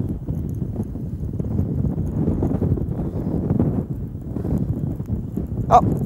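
Wind buffeting the microphone on an open boat deck: a low, uneven rumble with no clear pitch.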